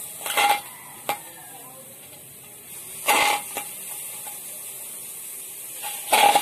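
Pieces of tulingan (bullet tuna) being set down in a metal wok: a clunk with a brief ring of the wok about half a second in, a small click near one second, and a second clunk a little after three seconds.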